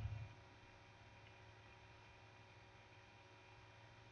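Near silence: a low hum stops just after the start, leaving only a faint steady background hum.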